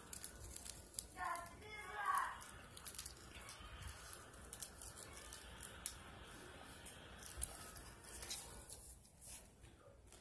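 Faint rustling and crinkling of rat cage bedding, with scattered small clicks, and a brief faint voice between about one and two seconds in.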